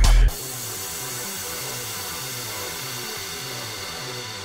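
Strips of dough deep-frying in hot vegetable oil, a steady sizzle, with quieter background music underneath. Loud bass-heavy electronic music cuts off sharply a moment in.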